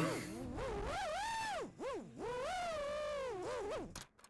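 Brushless motors of an FPV racing quadcopter, heard from the onboard camera's audio, whining with a pitch that rises and falls with the throttle. The sound dips briefly about halfway through and cuts off near the end as the quad comes down at ground level.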